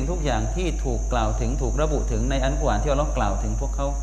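A man speaking into a microphone, over a constant high-pitched whine and a low steady hum.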